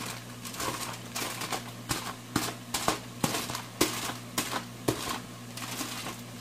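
Aluminium foil crinkling and a wooden spatula clicking and scraping as cooked ham and bacon pieces are pushed off the foil into a nonstick frying pan: an irregular string of short clicks and rustles.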